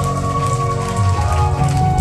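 Instrumental passage of a Korean trot karaoke backing track: held high notes over a steady bass beat, with no singing.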